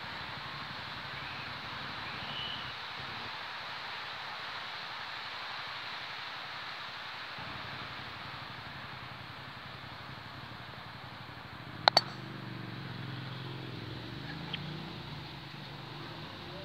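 Croquet mallet striking a ball in a croquet stroke, with the two balls set in contact: two sharp cracks in quick succession about twelve seconds in, over a steady outdoor hiss.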